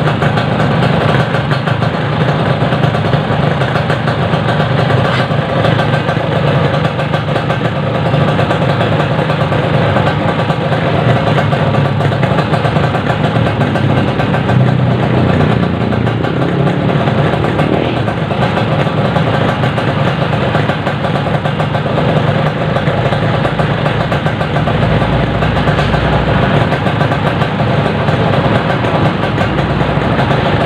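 Two-stroke motorcycle engines idling steadily, with no revving: a Yamaha RX-King and a Kawasaki Ninja 150 left running side by side.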